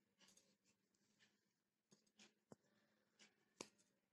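Near silence, with faint, scattered rustles and a few soft clicks of scissors cutting through cotton cloth.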